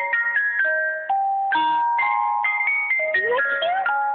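Battery-powered musical Christmas tree decoration playing a tinny electronic melody through its small speaker, one clean beeping note after another, with a short sliding note about three seconds in.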